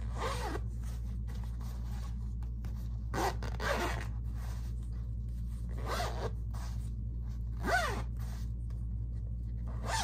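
Zipper on a fabric cosmetic pouch being run open and shut in about five short zips a couple of seconds apart, each with a gliding pitch.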